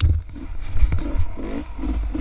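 Dirt bike engine running on a rough trail, its note coming and going in short pulses as the throttle is worked, over a heavy low wind rumble on the microphone.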